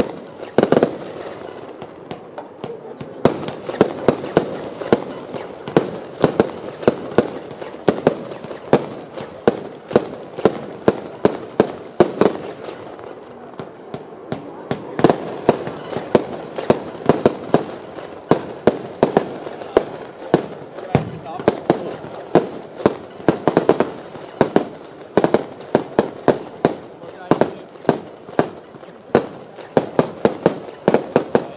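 A Lesli 'Black Caiman' 82-shot compound firework cake firing continuously: sharp cracks of launches and bursts, several a second. The firing thins briefly about halfway through, then picks up again.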